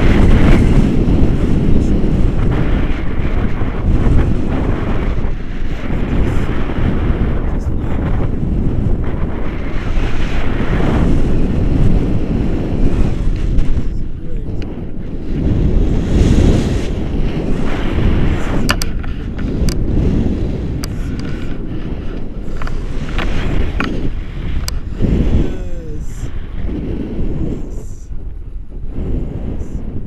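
Wind buffeting a selfie-stick camera's microphone in paraglider flight: loud, gusting wind noise that swells and eases throughout.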